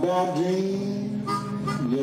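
Blues harmonica played cupped to a microphone over strummed acoustic guitar, with long held notes and a note bent down and back up near the end.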